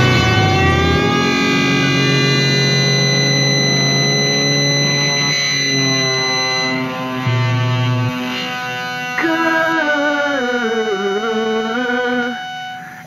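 Song music: long held chords ring and slowly fade with no beat. About nine seconds in, a wavering melody line with vibrato comes in over them.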